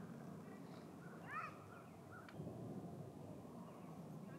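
Faint outdoor ambience with a short, high call that rises and falls in pitch a little over a second in, followed by a single light click.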